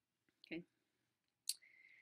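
A single sharp computer mouse click about one and a half seconds in, followed by a faint, short steady tone; otherwise near silence.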